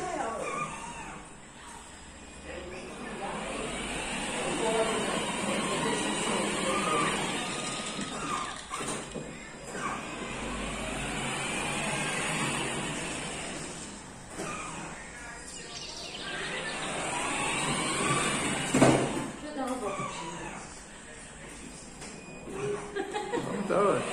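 Indistinct voices talking, rising and falling in loudness, with one sharp knock near the end.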